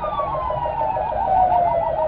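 Sirens: one wail falling steadily in pitch, sounding over a second siren's rapid yelp of about six or seven pulses a second.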